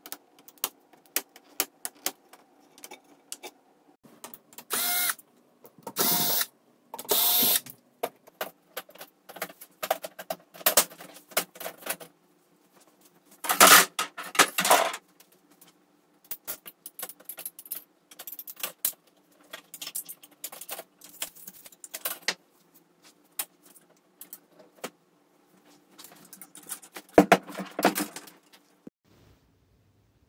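Irregular plastic and metal clicks, knocks, rattles and a few louder scrapes as an Insignia 50-inch LED TV is taken apart and its LCD glass panel handled and lifted off, over a faint steady hum.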